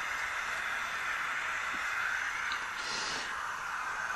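Steady hiss of oxygen flowing into a non-rebreather mask and its reservoir bag, with a breath through the mask about three seconds in.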